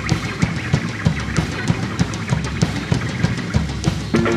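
Live rock band playing: electric guitars over a drum kit keeping a steady, fast beat.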